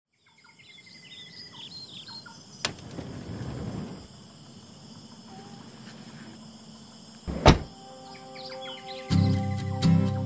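Birds chirping in a pine forest over a steady hiss, with a sharp click and a brief swell of rustling noise about three seconds in. A heavy thud, the loudest sound, comes about seven and a half seconds in, and music starts near the end.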